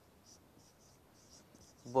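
A marker writing on a whiteboard: a run of faint, short strokes.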